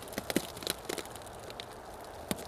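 Reflectix bubble-foil insulation sheet crinkling and crackling as it is peeled back off a top bar hive's wooden bars: a few sharp crackles in the first second, then only faint background.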